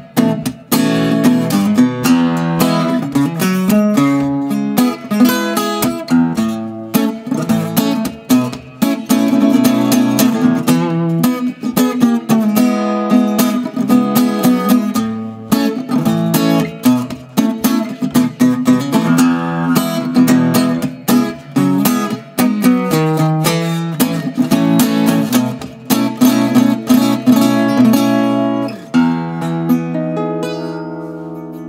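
Enya Nova Go SP1 carbon fiber travel-size acoustic guitar being played: a fast run of picked single notes over ringing lower notes. Near the end the playing stops on a chord that rings out and fades.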